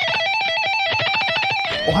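Electric guitar playing a fast run of rapidly picked notes, the pitch stepping up and down in a repeating pattern, stopping near the end.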